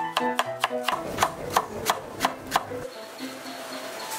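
Chef's knife slicing through a yellow bell pepper and knocking on a wooden chopping block: a quick run of cuts, then slower cuts about three a second, stopping near the three-second mark. Plucked background music plays underneath.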